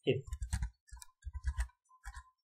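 Typing on a computer keyboard: a short run of keystrokes in three small clusters, as a few characters of code are entered.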